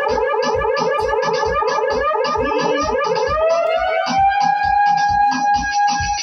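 A DJ mix of dance music played from a DJ controller: a steady kick drum beat under a rapidly stuttering synth note that, about three seconds in, glides upward and settles into one long held tone.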